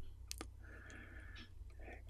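Quiet pause in a studio recording: faint low hum of room tone with a single sharp click about a third of a second in.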